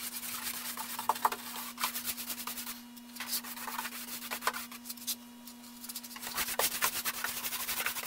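Paintbrush strokes on the face of a hollow-core six-panel door: the bristles rub and scratch over the wet surface in repeated quick passes. A steady low hum runs underneath.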